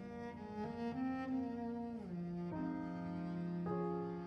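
A cello bowing a slow, legato melody of sustained notes. About two seconds in, it slides down to a long low held note.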